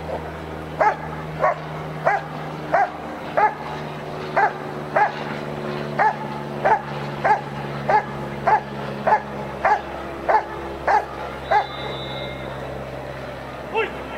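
German Shepherd barking at the protection helper while guarding him after releasing the bite sleeve: a regular run of about seventeen single, sharp barks, roughly one every 0.6 seconds, stopping about 11 seconds in. A steady low hum runs underneath.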